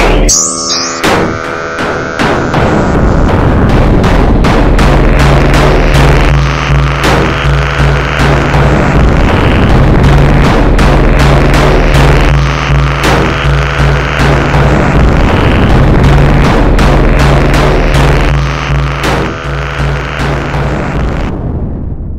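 Loud, dense music: a steady low drone under a constant clatter of sharp hits, with a repeating higher pattern that drops out and returns. It fades out at the very end.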